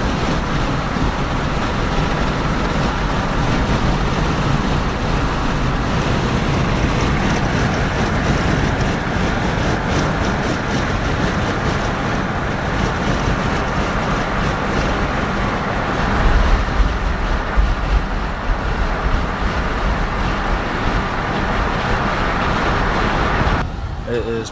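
Steady road noise of a car driving at speed, heard from inside the cabin, with a louder, uneven low rumble for a few seconds past the middle.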